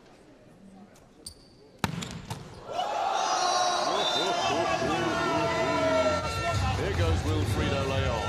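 Indoor volleyball arena: a sharp smack of a ball about two seconds in, then a loud crowd of many voices cheering, with scattered ball thuds.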